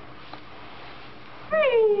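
A baby's short, loud vocal cry about one and a half seconds in, starting high and falling in pitch, after quiet room sound.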